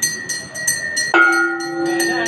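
Temple bells ringing for aarti: a rapid, even clang of a hand bell, about four or five strokes a second. A deeper, sustained ringing tone comes in suddenly about a second in and holds.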